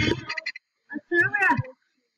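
A child's voice making two short wordless vocal sounds, the second about a second in.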